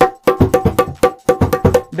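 Dholak played by hand: a quick, even run of strokes, about five a second, mixing ringing treble-head tones with deep bass-head strokes, stopping just before the end. It is played with the hands swapped to the player's unaccustomed sides, bass with the left hand and treble with the right.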